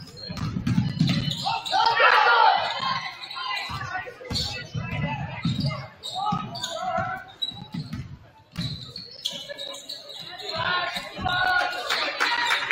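Basketball dribbled on a hardwood gym floor, a run of repeated low thuds, over the voices of players and spectators in the gym.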